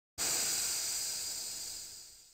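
A sudden hiss of spraying gas that fades away over about two seconds.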